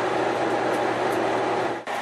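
SBI wood-stove accessory blower, a variable-speed fan, running steadily at its fastest setting: an even rush of moving air over a low hum. It breaks off for an instant near the end.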